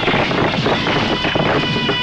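Loud, dense action-film soundtrack noise: a steady rushing rumble with swooping tones and scattered knocks.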